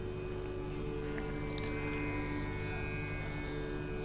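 A steady hum of several held tones, level throughout, between two stretches of speech.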